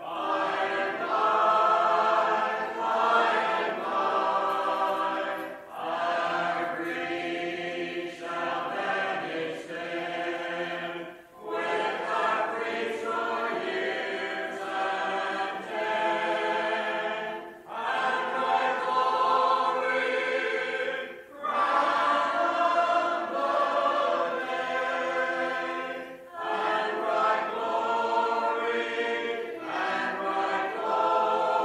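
A Primitive Baptist congregation singing a hymn a cappella: many unaccompanied voices in long sung lines, with a short break for breath every four to six seconds, heard through an old cassette recording.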